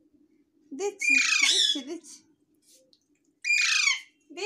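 Baby Alexandrine parakeet squawking twice. A long call comes about a second in and a shorter one near the end, each falling in pitch.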